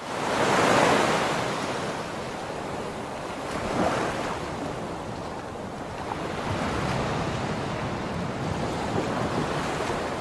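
Sea surf: a steady rush of waves washing in, swelling loudest about a second in and again near four seconds.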